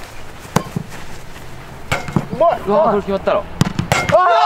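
Football kicked hard with the foot, a sharp thud about half a second in and two more later, the last near the end as a volley is struck toward the crossbar.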